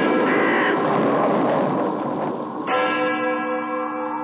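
Spooky sound-effect bed: a dense noisy wash with a crow cawing near the start, then a single deep bell strike about two and a half seconds in that rings on and slowly fades.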